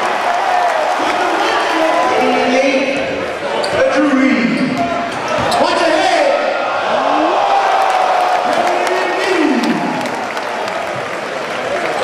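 A basketball being dribbled on a hardwood gym floor, over the voices and noise of a large crowd in a busy gym.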